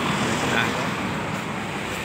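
Street traffic noise: a steady rush from vehicles passing on the road, with a car going by.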